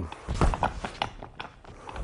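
A run of irregular knocks and thuds, strongest about half a second in, from a boxer stepping in and jabbing to the body of a training dummy.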